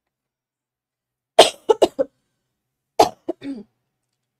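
A person coughing: two short fits, the first of about four coughs about a second and a half in, the second of about three coughs around three seconds in.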